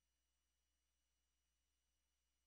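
Near silence: only a faint, steady electrical hum and hiss from the recording's noise floor.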